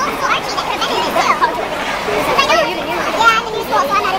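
A crowd of people talking over one another, with no single voice standing out clearly.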